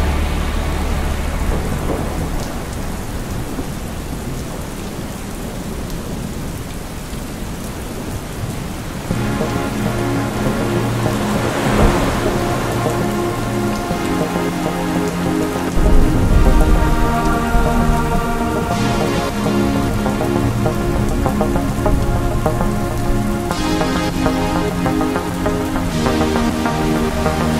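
Steady rain with thunder under an ambient synth soundtrack. Sustained synth chords come in about a third of the way through, and a deep rumble of thunder swells a little after the midpoint.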